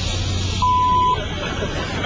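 A single electronic beep, one steady pure tone lasting about half a second, starting about half a second in, over a steady low hum and background noise.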